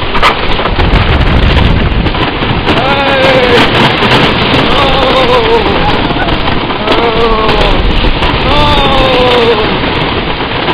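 Wooden roller coaster train running fast over its track, a loud steady rumble mixed with heavy wind buffeting the microphone. Riders yell four times in long cries that fall in pitch.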